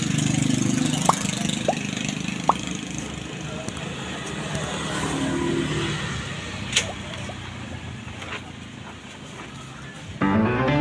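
A motor vehicle engine running steadily, louder at the start and again around five seconds in, then fading; a few faint short clicks lie over it, the sharpest a little before seven seconds.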